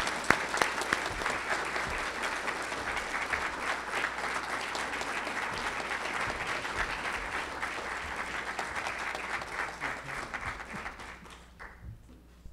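An audience applauding steadily, the clapping thinning out and stopping about a second before the end.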